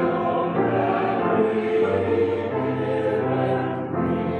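Church choir singing a slow phrase of long held chords, the low notes moving to new pitches as it goes.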